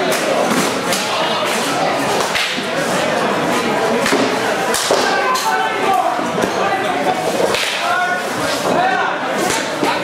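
Rapier blades clicking against each other and swishing in a fencing bout, a string of sharp irregular strikes over the chatter of a crowd in a large hall.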